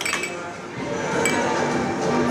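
Air hockey game: a few sharp plastic clacks as the mallets strike the puck and it knocks against the table rails, with voices and music in the background.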